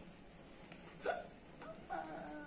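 Quiet room tone with one brief, sharp sound about a second in, and a faint voice starting near the end.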